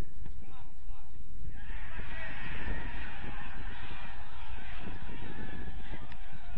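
Honking bird calls: a few single calls at first, then a dense chorus of overlapping calls from about one and a half seconds in, over a steady low rumble.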